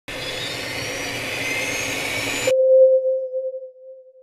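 Logo intro sound effect: a whooshing noise builds for about two and a half seconds with faint rising whistles in it, then cuts suddenly to a single pure tone that fades away.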